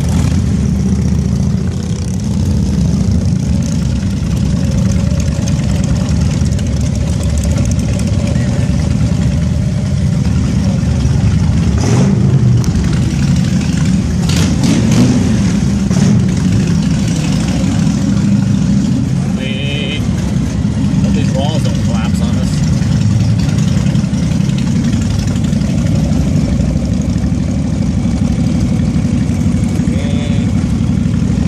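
Vehicle engine running steadily under way, a continuous low rumble with road and wind noise, and a few brief knocks about halfway through.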